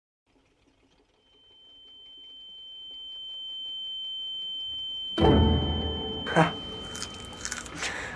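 A single steady high-pitched ringing tone, an ear-ringing sound effect, fades in and grows louder. About five seconds in, a sudden loud low hit breaks in and the tone carries on beneath it until near the end.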